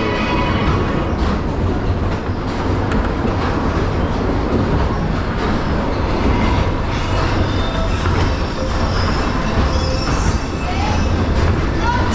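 Waltzer fairground ride in motion, heard from a spinning car: a steady rumble and rattle from the rotating platform and cars running on their track.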